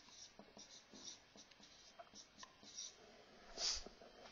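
Marker writing on a whiteboard: a run of short, faint strokes, with a brief louder rustle about three and a half seconds in.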